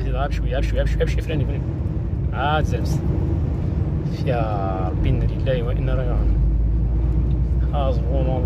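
A vehicle driving through a strong dust storm: a steady low rumble of engine, road and wind noise inside the cabin. A person's voice cries out several times over it, the longest cry about four seconds in.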